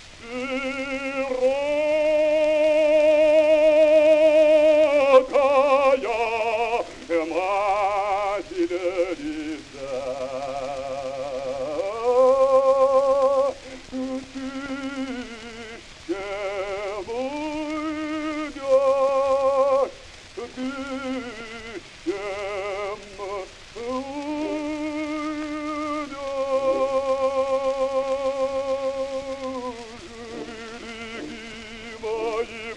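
Male opera voice singing in long held notes with a wide vibrato, sliding between pitches and pausing briefly between phrases. The old recording carries a steady surface hiss.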